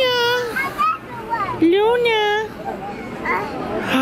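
A toddler's high-pitched wordless babbling: a few drawn-out calls, each rising and then sliding down in pitch, with short gaps between them.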